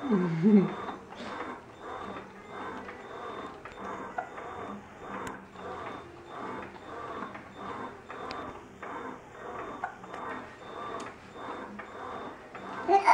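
A baby's short cooing squeal at the start, over a Fisher-Price electric baby swing running with a soft, quick repeating pattern of about two beats a second.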